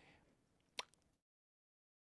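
Near silence, broken by one short click a little under a second in.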